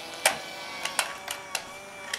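Light, irregular clicks and taps, about six in two seconds, from hands handling and pressing on a cardboard toy box, over faint steady tones.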